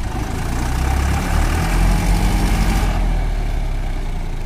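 Diesel engines of two farm tractors, a Deutz-Fahr 50E and a Mahindra 575 DI, running steadily under load while chained together in a tug-of-war pull.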